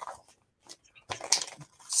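Clear plastic comic-book bag crinkling and rustling as it is handled, in short irregular crackles that pick up in the second half.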